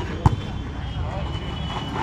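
A volleyball struck once by a player's hands, a single sharp slap about a quarter of a second in, over the steady chatter of spectators.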